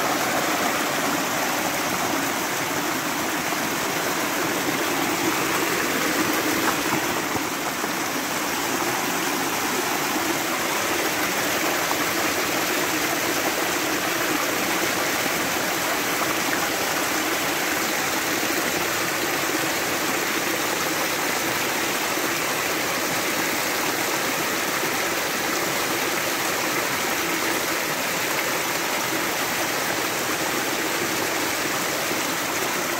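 Spring water gushing strongly out of a rocky bank and splashing over stones: a steady rushing of falling water.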